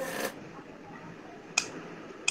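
A brief rustle at the start, then a single sharp click about one and a half seconds in.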